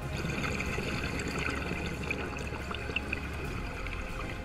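Underwater ambience picked up by a diver's camera: a steady watery hiss with trickling, bubbling sounds.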